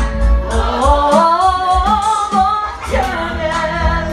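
A woman singing karaoke into a microphone over a loud backing track with heavy bass, holding one long, gliding sung phrase through the middle.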